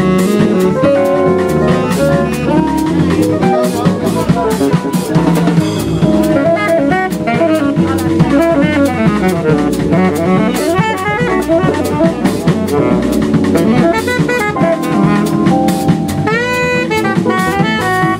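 Live jazz quartet: tenor saxophone soloing over keyboard piano, electric bass and drum kit, with the drums and cymbals keeping up a busy beat.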